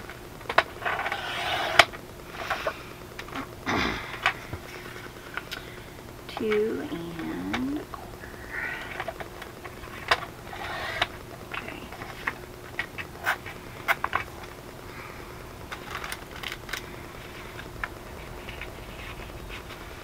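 Sliding paper trimmer cutting cardstock: several short scraping swishes of the blade carriage along the rail, the loudest near the start, mixed with clicks and taps of paper and tools being handled. A short wavering pitched call, rising and falling, about seven seconds in.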